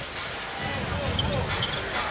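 Basketball being dribbled on a hardwood arena court, over the steady murmur of an arena crowd.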